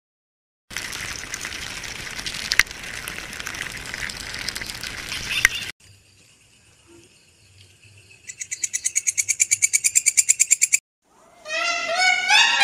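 A crackling hiss with a few sharp clicks for about five seconds, then a locust stridulating: a faint buzz that turns into a fast run of high, rasping chirps, about eight a second, which stops abruptly. Pitched, gliding calls start just before the end.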